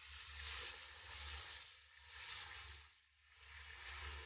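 Bath tap running into a bathtub as it fills: a faint hiss of falling water that swells and fades, with a low rumble underneath.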